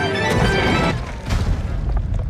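Cartoon soundtrack music gives way to a loud, deep boom, a distant-explosion sound effect with rumbling that carries on after the music stops about a second in.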